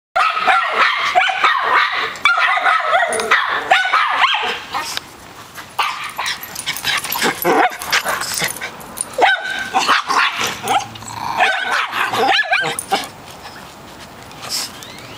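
Small dogs barking: a fast run of high, yappy barks for the first four seconds or so, then scattered barks and yips that die down near the end.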